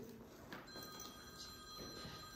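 Faint steady high-pitched electronic tones, several sounding together, come in a little over half a second in and hold steady over the quiet of the room.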